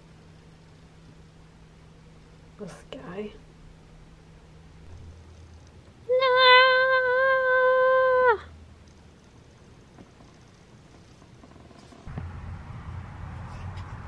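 A cat's single long meow, held at a steady pitch for about two seconds midway through, after a brief softer call a few seconds earlier. Near the end, a low rumbling background noise comes in.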